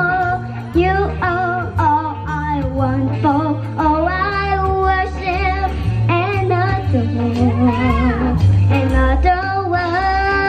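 Seven-year-old girl singing a song into a handheld microphone over instrumental accompaniment with a low bass line; her voice holds notes with vibrato and slides through quick runs.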